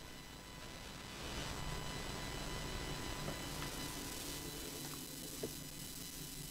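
Amplified noise floor of an analogue synth recording passed through a ground-hum eliminator box: steady hiss with a low hum and thin, faint high whining tones from electromagnetic interference. It gets a little louder about a second in, with a few faint ticks.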